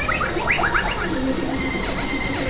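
Experimental electronic synthesizer noise: a quick run of chirp-like falling glides in the first second, over steady droning tones and hiss.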